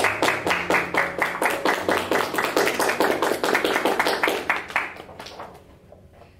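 Two people clapping their hands in applause: a fast, steady run of claps that fades out about five seconds in.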